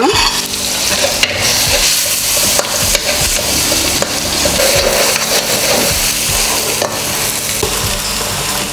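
Diced chicken and spice paste sizzling in hot oil in a wok, stir-fried with a metal spatula that scrapes and clicks against the pan now and then. The sizzle is a steady hiss.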